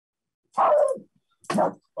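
A person laughing: two short, breathy bursts of laughter about a second apart.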